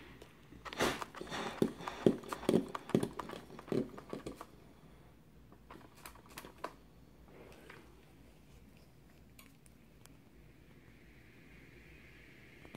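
Clicks and rustling of a steam iron being set down and moved over a shirt, in the first four seconds or so, with a few faint ticks a couple of seconds later; then only faint room tone.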